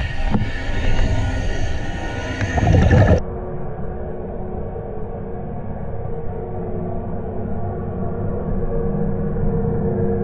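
Underwater rushing and low rumbling picked up by a scuba diver's camera as a muskie charges close by, loudest just before three seconds in. About three seconds in it cuts off suddenly to a duller, steady drone with held low tones.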